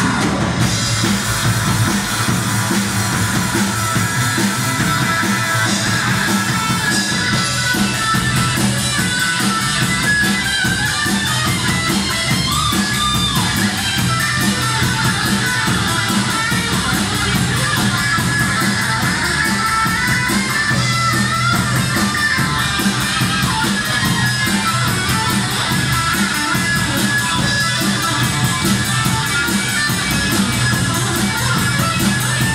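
Live rock band in an instrumental passage: electric guitar playing lead lines over electric bass and a drum kit, with no vocals.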